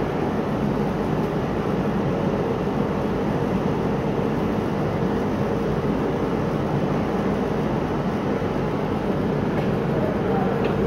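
Steady mechanical hum and rush of screen-printing shop machinery running without a break, with a low hum under a constant whoosh of air.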